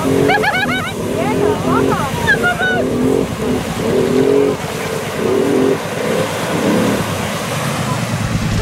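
ATV engine revving in repeated short bursts, its pitch rising and falling, as the machine churns through a deep mud hole. People yell and whoop over it during the first few seconds.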